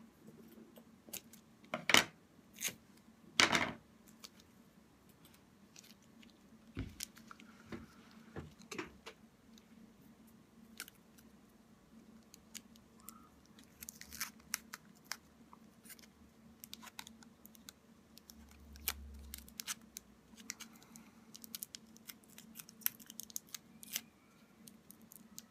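Clear sticky tape ripped off the roll twice, about two and three and a half seconds in, then quieter crinkling and clicking of plastic wrap and tape as it is wrapped and pressed around a small paper-clip-and-plastic spoon head. A steady low hum sits underneath.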